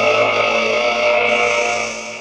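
Rock music: one sustained distorted electric guitar chord, held and fading slightly near the end.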